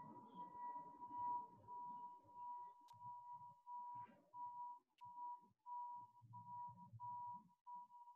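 A faint, steady, whistle-like high tone held at one pitch. About halfway through it starts breaking up into short pieces with uneven gaps.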